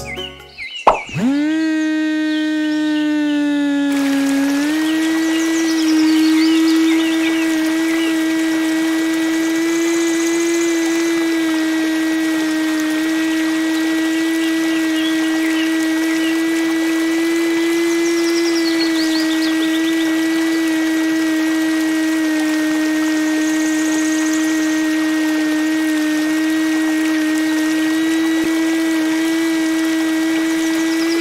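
Small DC hobby motor switched on, whining up to speed about a second in, then running with a steady whine as it drives a miniature belt-driven water pump.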